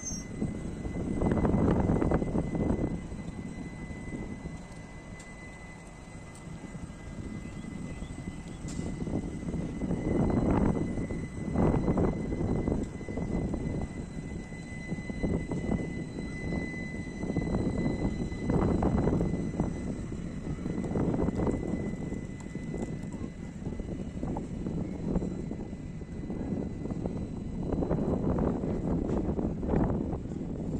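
Low rumble of a passenger train with ICF coaches at a station platform, swelling and fading several times, with a steady high-pitched whine that stops a little past halfway.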